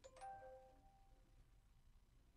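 A quiet bell-like chime struck near the start, ringing out and fading over about a second.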